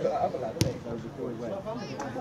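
A rugby ball thuds once, sharply, about half a second in, over men's voices calling out on the pitch.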